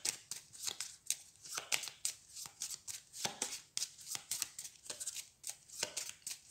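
A deck of sleeved game cards being shuffled overhand by hand: a rapid, irregular run of light clicks and flicks as the cards slide and drop against one another.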